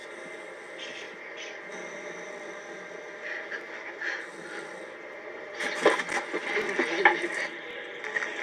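Steady low drone of a private jet's cabin. About five and a half seconds in, a louder stretch of irregular scraping, rustling noise lasts a couple of seconds.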